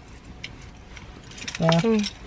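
A few faint clicks from small objects being handled, over a low, steady background. A short spoken word near the end.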